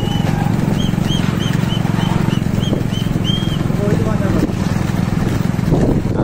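Motorcycle engine running steadily at speed beside a galloping bullock cart. A high whistle ends just as the sound begins, followed about a second in by a quick series of about ten short whistle blasts, roughly three a second.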